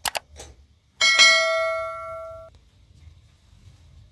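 Two quick mouse-click sound effects, then a bright bell ding that rings for about a second and a half and cuts off abruptly: the added sound effects of a like-subscribe-bell overlay animation.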